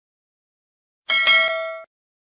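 A bell-like ding sound effect for the notification bell of a subscribe animation: one struck chime with several ringing tones, starting about a second in and cut off suddenly a little before the end.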